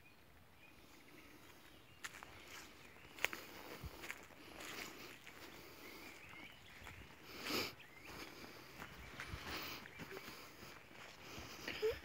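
Faint footsteps through dry grass and undergrowth, with scattered rustles and one louder rustle a little past halfway.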